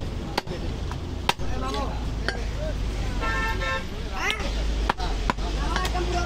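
A butcher's cleaver chopping goat meat, about eight irregular sharp strikes. A vehicle horn honks once for about half a second, about three seconds in, over street traffic rumble and background voices.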